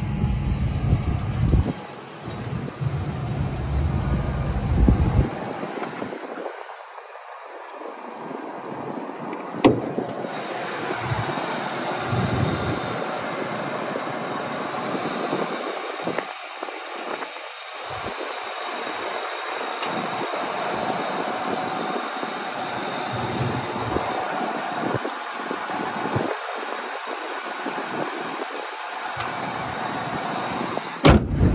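Ford 6.8-litre Triton V10 of a 1999 F-350 Super Duty running at a steady idle, heard close to the open engine bay. Low rumbling on the microphone during the first five seconds.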